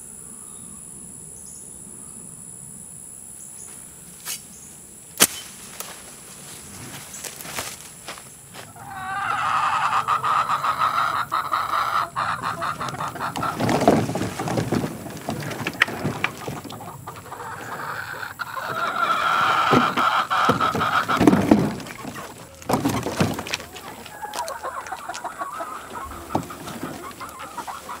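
Chickens clucking and calling in uneven bursts, loudest in two stretches in the second half. Before that it is quiet, with only a faint steady high insect drone.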